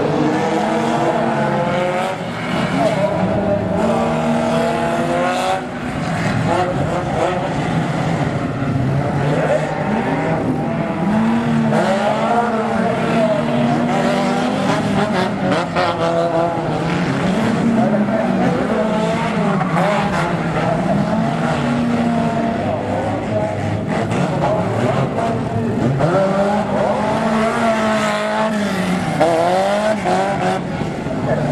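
Several banger-racing cars' engines revving hard at once, the pitch swinging up and down every couple of seconds as they push against each other and spin their wheels.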